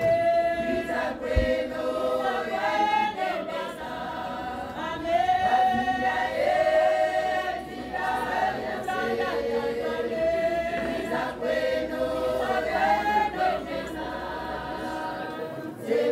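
A group of voices singing together without instruments, a chant-like song of held notes, each about a second long, moving from note to note.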